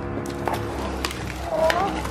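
A wooden toy board in plastic wrap being handled, giving a few light taps and clicks over faint steady background tones, with a short rising vocal sound about one and a half seconds in.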